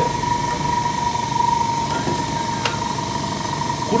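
Sparmax Power X high-pressure airbrush compressor running steadily with an even high-pitched hum over a motor drone, with a couple of faint clicks.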